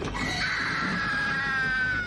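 A long, high-pitched scream, held for about a second and a half with its pitch sliding slowly down.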